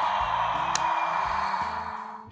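The Matchbox Action Drivers Airport Adventure playset's electronic sound effect: a steady hiss from its small speaker, set off as a toy car rolls up to the terminal doors, with a sharp click under a second in. It plays over background music and fades near the end.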